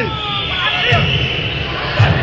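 Spectators' voices: a shout trailing off at the start and a short call just before a second in, over low rumbling.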